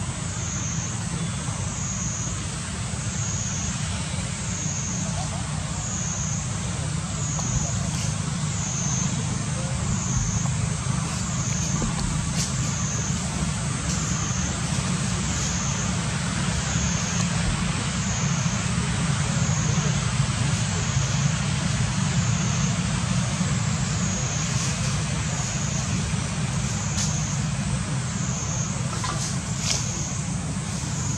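Cicada chorus, a high droning whine that swells and dips in pitch about once a second, with a steady low rumble beneath it.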